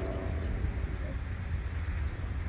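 Uneven low rumble of wind buffeting the microphone in the open, with a faint voice near the start.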